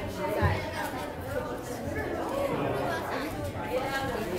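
Many people chatting at once in a church sanctuary, their voices overlapping, with a thump about half a second in.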